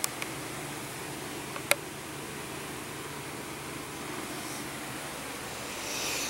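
Steady low hiss with a faint hum: room tone, broken by a small click at the start and a sharper single click just under two seconds in.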